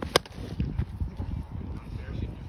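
A single sharp crack of a wooden hurley striking a sliotar, just after the start.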